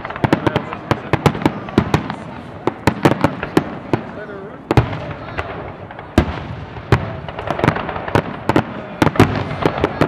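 Fireworks finale: aerial shells bursting in rapid succession, sharp bangs coming several a second in clusters, with a brief thinner stretch around the middle.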